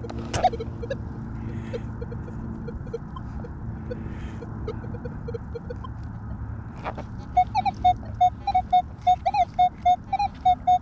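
Minelab Manticore metal detector sounding target tones as its coil is swept over a buried target. Short, faint low beeps come at first. After a single click just before seven seconds in, louder higher beeps repeat a few times a second.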